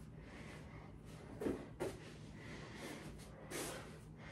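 A man breathing out hard through the nose during core exercise. There are two short, sharp breaths about one and a half seconds in and another near the end, over quiet room tone.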